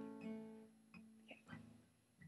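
Acoustic guitar played quietly: a strummed chord rings out and fades, then a few soft single notes are picked.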